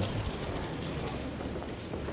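Steady background noise of a narrow city street, with no single sound standing out.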